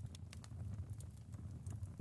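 Faint crackling of a small fire, with scattered soft pops and clicks over a low steady background.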